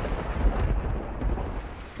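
Thunder rumbling, with a deep swell about half a second in that dies away toward the end.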